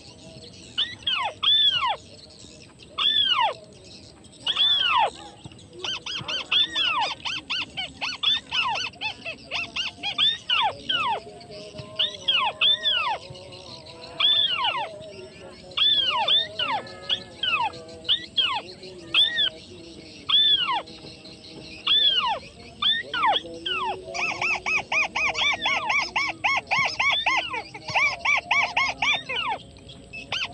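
Crake calls: a series of sharp arched notes, one every second or two. About 24 seconds in they change to a fast, chattering trill.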